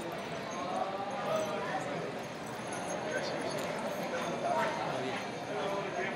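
Faint, indistinct background voices over steady room noise.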